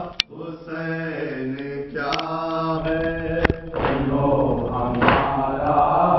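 A group of men chanting a Muharram noha together in a steady lament. Near the end, the group's chest-beating (matam) strikes land together, twice, just over a second apart.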